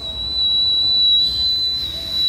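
A person whistling one long, loud, steady high note: a call whistle meant to summon someone who has wandered off.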